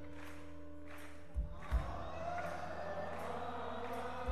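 Live rock band performing a slow song, with held notes throughout and a pair of deep beats about a second and a half in. A sustained sung or held melodic line swells in the second half.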